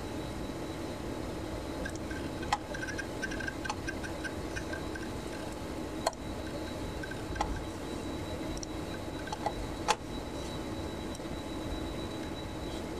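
A few sharp clicks, about four spread a couple of seconds apart, over a steady room hum with a faint high whine: the computer's controls being clicked to move between screens of the program.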